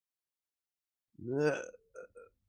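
Silence, then a little over a second in one short voiced sound from a person, lasting about half a second.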